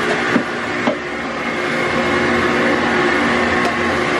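Vacuum cleaner running steadily with a whining motor tone, its hose nozzle worked along wooden shelves, with a couple of light knocks in the first second.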